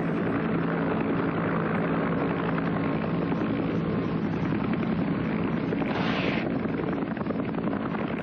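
AH-1 Huey Cobra helicopter gunship flying, with a steady din of rotor and engine noise. A short rush of hiss comes about six seconds in.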